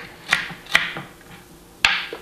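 Three sharp knocks as pieces of celery are stuffed into a blender jar, two close together near the start and a louder one near the end.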